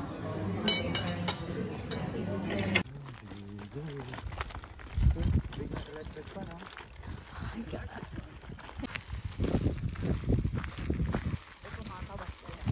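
Café chatter with cutlery clinking on plates for the first few seconds. Then, after a sudden cut, a quieter outdoor sound with wind gusting against the microphone in low rumbling surges, once about five seconds in and again near the end.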